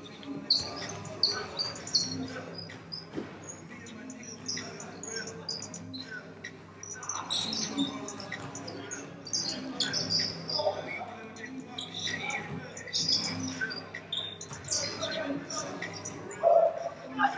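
Basketball sneakers squeaking in short, scattered chirps on a hardwood gym floor, mixed with knocks of the ball and players' voices.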